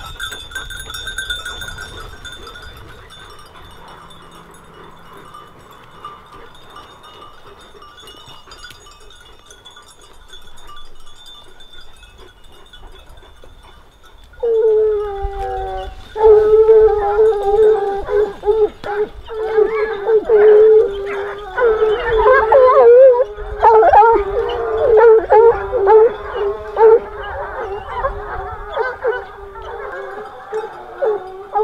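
A pack of Grand Bleu de Gascogne hounds giving tongue on the hare's line. It is quieter in the first half, then from about halfway several hounds bay loudly close by, their long calls overlapping.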